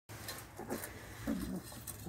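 Puppies eating from stainless steel bowls, with light clicks of snouts and tongues against the metal and a short low vocal sound about a second and a quarter in.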